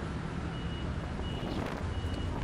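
Skoda Felicia pickup driving slowly, a steady low engine and road rumble. A faint high beep repeats about every 0.7 seconds over it.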